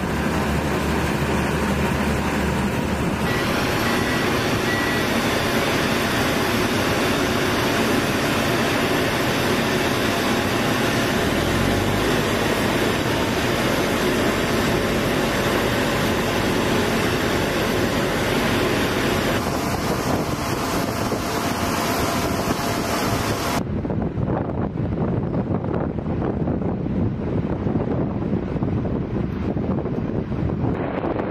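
Loud steady roar of jet engines and ground-vehicle engines on an airfield ramp, with wind on the microphone. The sound shifts abruptly about three, twenty and twenty-four seconds in.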